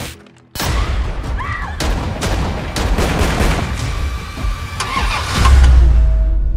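Trailer sound design: after a brief hush, a sudden loud burst of vehicle engine noise with sharp hits, ending in a deep boom.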